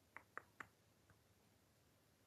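Near silence with three faint quick clicks in the first half-second and a fainter one about a second in.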